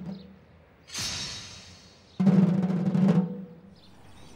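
Dramatic percussion in a documentary soundtrack. A bright, ringing crash-like hit comes about a second in, and a loud drum roll of about a second follows and cuts off sharply.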